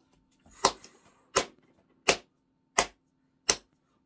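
One person clapping slowly by hand, five claps about 0.7 s apart.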